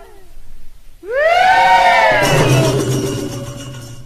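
A person's drawn-out high cheering shout that rises and then falls in pitch, with crowd noise and a low hum coming in about halfway through.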